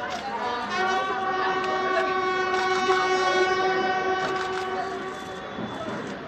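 Bugle call at a police guard-of-honour salute, one long note held for about five seconds.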